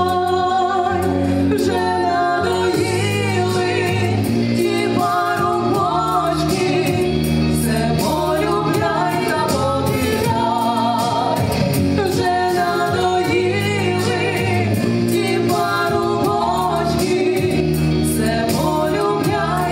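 Two women singing a song together into microphones, over a recorded instrumental accompaniment with a steady beat.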